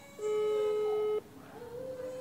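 A single steady electronic beep from a smartphone during a video call, lasting about a second and cutting off abruptly.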